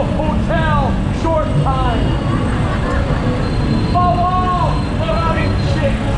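A man preaching in a loud, shouting voice with long drawn-out syllables, over a steady low rumble of city traffic and street noise.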